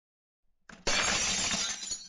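Glass-shattering sound effect: a sudden crash just under a second in, followed by a shower of breaking glass that fades away.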